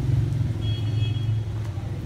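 A steady low mechanical drone, like a motor or engine running, with a faint high whine briefly in the middle.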